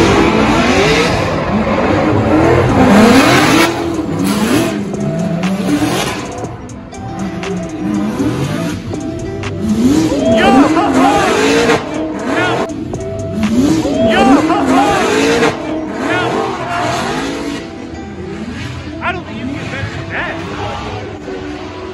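Drift cars sliding in tandem, engines revving up and down in quick swings as the drivers work the throttle, with tyres screeching. Loud, easing off somewhat near the end.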